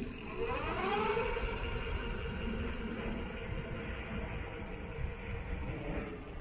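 Rear hub motor (48V 500W) of a fat-tire electric bike spinning the rear wheel: a whine that rises in pitch over about the first second and a half as the wheel spins up, then holds steady.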